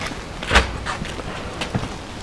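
A solid knock about half a second in, then a few lighter clicks: a folding suitcase solar panel's frame and stand legs being turned and set down on stone paving.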